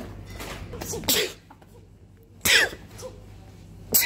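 A person sneezing three times, about a second and a half apart, the last one right at the end.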